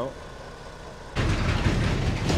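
Heavy goods truck passing close by on the road. Its engine and tyres come in suddenly and loud about a second in.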